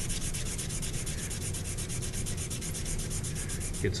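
A stick of pastel chalk being rubbed quickly back and forth on a sheet of paper, in fast, even, scratchy strokes, grinding off chalk powder to shade with. The rubbing stops shortly before the end.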